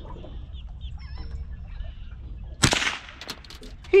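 A single rifle shot about two and a half seconds in, a shot at a nutria that hits it in the head, followed by a few faint clicks. Faint bird calls come before it.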